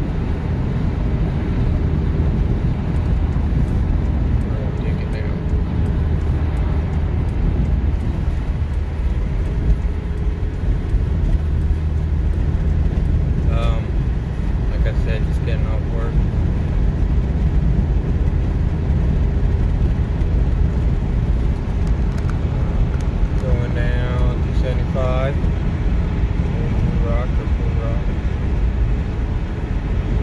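Steady road and engine rumble inside a car's cabin at highway speed, with short snatches of speech over it.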